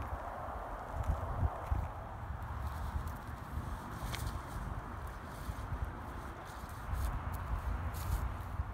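Wind buffeting the microphone: an uneven, gusty low rumble under a steady hiss, with a brief click about four seconds in.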